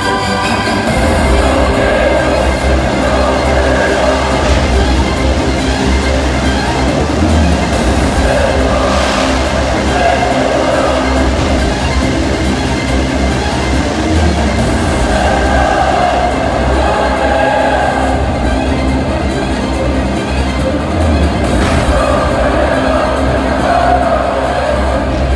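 A fireworks display heard over loud show music: a continuous rumble and crackle of launches and bursts, with two sharper bangs standing out, one about nine seconds in and one near the end.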